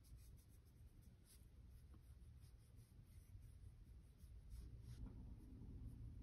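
Near silence with a series of faint, soft strokes of a fine watercolour brush on paper.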